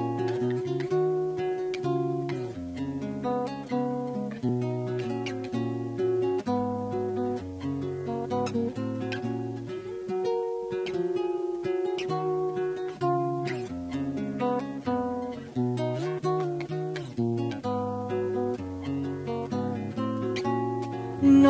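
Nylon-string classical guitar playing an instrumental introduction in the style of a Río de la Plata cielito: single plucked notes over a moving bass line, which drops out briefly about halfway through.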